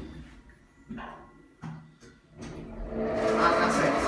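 Otis Gen2 lift doors opening at a floor: two short clicks from the door mechanism, then the louder background sound of the shop with voices coming in as the doors open.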